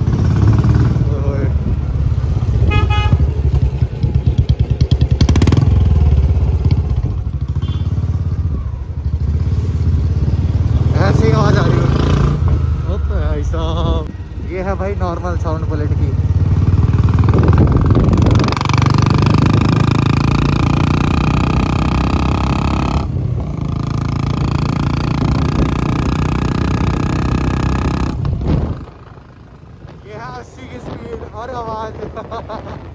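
Royal Enfield Bullet 350's single-cylinder engine running loud through an aftermarket Mini Punjab silencer while the bike is ridden. The sound drops away sharply near the end.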